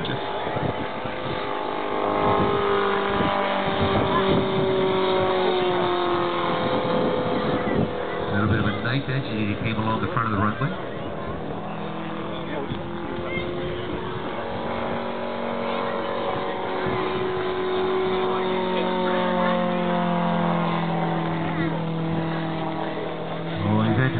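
Radial engine of a large-scale radio-controlled aerobatic biplane running in flight. Its pitch slides slowly down and back up and its loudness swells and fades as the plane loops, turns and passes.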